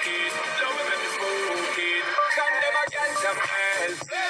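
A song with a melodic vocal line playing through a pair of Indiana Line TH 210 bookshelf speakers, with very little deep bass coming through.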